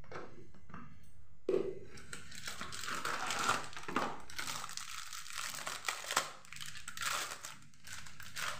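A spice packet crinkling and rustling as it is handled and opened by hand, a dense crackle of many small clicks that starts about a second and a half in.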